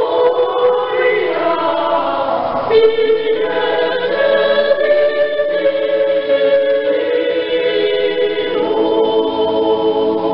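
A choir singing a Christmas carol in several parts, holding long sustained notes.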